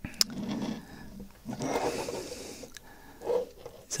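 Handling noise from a small plastic R2-D2 model: a sharp click just after the start as the head seats on the body, then irregular plastic rubbing and scraping as the model is turned in the hands.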